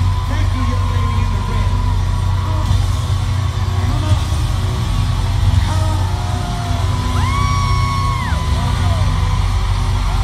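Live rock band playing through an arena sound system, heard from the stands with a heavy, boomy low end, while the crowd yells, cheers and sings along. A long held high note stands out near the end.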